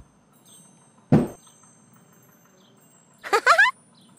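Cartoon sound effects over a quiet background: a single thump about a second in, then a short, high, rising voice-like squeak near the end.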